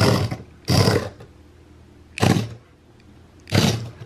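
Small electric motors of a HexBug Fire Ant remote-control robot ant whirring in four short spurts as it is driven across a tabletop.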